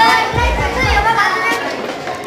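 Several children talking at once in a small crowd, their voices overlapping.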